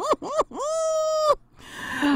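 A woman laughing: a quick run of short 'ha' bursts that ends on one long held high note, followed by a sharp in-breath near the end.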